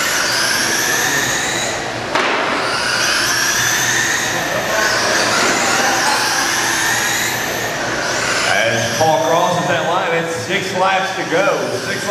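Electric RC oval race trucks running laps, their motors and drivetrains giving a high whine that rises in pitch again and again as the trucks accelerate past. Voices talk over them near the end.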